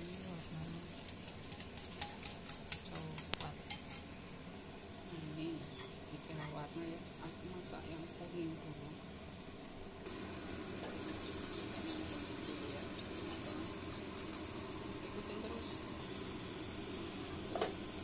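Metal utensils stirring batter in ceramic bowls: a fork clinks rapidly against the bowl in the first few seconds, then further bouts of clinking and scraping, with one sharp clink near the end.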